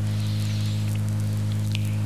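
Steady electrical mains hum: a low drone with a stack of evenly spaced overtones, over faint hiss.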